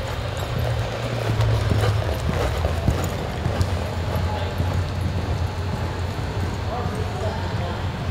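A horse's hoofbeats on the soft dirt of an indoor arena as it lopes, scattered soft clicks over a steady low hum.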